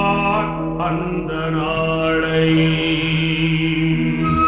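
A Tamil Islamic devotional song: a solo voice singing long, wavering held notes in a chant-like melody over a steady low drone.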